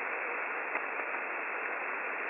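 Shortwave radio static from a WebSDR receiver recording tuned to 14,298 kHz: a steady, even hiss with no voice, squeezed into a narrow band with sharp cut-offs top and bottom, like a receiver's voice passband.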